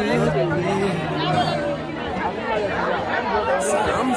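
Crowd of people talking over one another at once, with a song playing faintly underneath.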